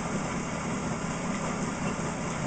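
A car alternator from a 1998 Plymouth Breeze, driven by a pedalled exercise bike, spinning with a steady whir while it charges a battery bank.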